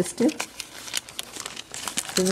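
Wax paper crinkling and rustling as a thin disc of rice-flour dough is peeled off it by hand, a run of small rapid crackles.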